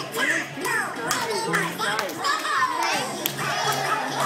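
Dance music playing in a large hall, with children's high voices calling and squealing over it.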